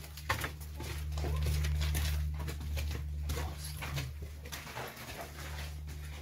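Footsteps on the dirt-and-gravel floor of a narrow stone passage, irregular soft steps over a steady low rumble that swells for a couple of seconds near the start.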